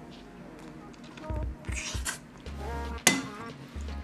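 Soft background music, with a single sharp clink of a utensil against ceramic tableware about three seconds in, and a few dull knocks of dishes being handled before it.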